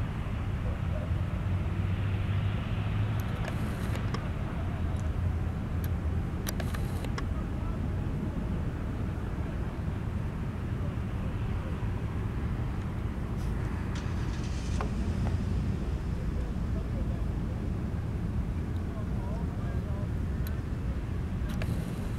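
Twin 225 hp outboard motors on a Coast Guard response boat idling at low speed, a steady low rumble throughout.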